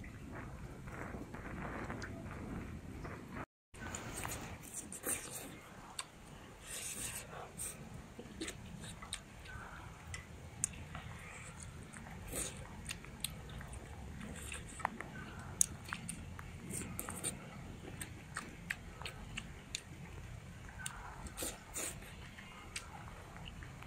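A person chewing and eating mouthfuls of stir-fried green chili peppers and pork with rice, with many short smacks and clicks throughout. The sound drops out for a moment a few seconds in.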